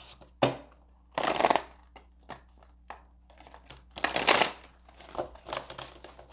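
A tarot deck shuffled by hand: bursts of cards sliding and slapping against each other, the longest about a second and a half in and about four seconds in, with light taps and clicks between.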